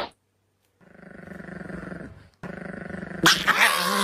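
Electric foil shaver buzzing steadily from about a second in, with a brief break, then a dog vocalising loudly with a wavering pitch near the end.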